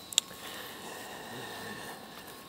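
Quiet outdoor city background hiss with a faint steady hum, broken by a single short, sharp click a fraction of a second in.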